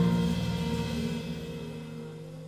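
Live jazz septet holding a closing chord that fades away, the held bass and mid notes ringing out with a light cymbal wash underneath.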